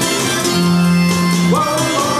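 Live acoustic pop performance: an acoustic guitar strummed under several voices singing together, with held notes that step up in pitch about one and a half seconds in.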